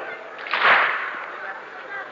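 A gathering of mourners striking their chests together once in a single slap of many hands, the latm that keeps time in a Husseini lament. It fades out quickly.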